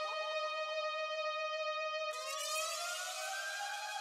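A steady electronic siren-like tone, rich in overtones, that about two seconds in slides up in pitch and then holds the higher note.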